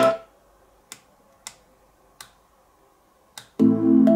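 Music playing through a TOPROAD portable Bluetooth speaker cuts off, then four soft clicks from its push buttons are heard while the track is changed. Near the end a different track starts.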